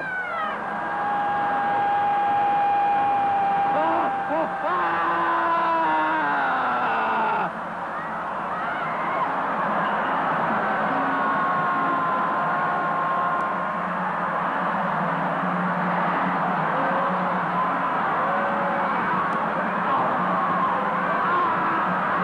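A crowd of people screaming, wailing and howling all at once: the loud shouting phase of a dynamic meditation session. One long high cry is held early on, then many voices overlap, held and wavering in pitch.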